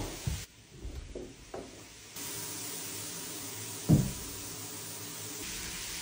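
A few light knocks, then a shower is turned on about two seconds in and runs as a steady hiss of spraying water. A single sharp thump comes about two seconds after the water starts.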